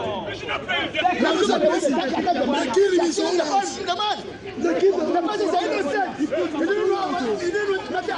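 Several people talking over one another at once, loud and indistinct, with no single voice standing out; there is a short lull a little past the middle.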